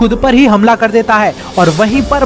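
A man narrating in Hindi, with a short hiss about three-quarters of the way through and a low hum underneath.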